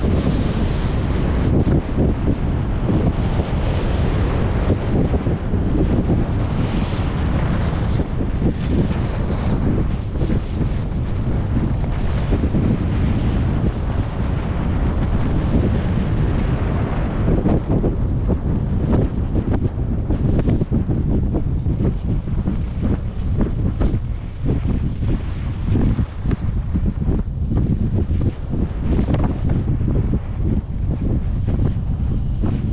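Wind buffeting an action camera's microphone while skiing downhill at speed, a steady deep rumble, with the hiss of skis sliding over groomed snow on top that thins in the second half.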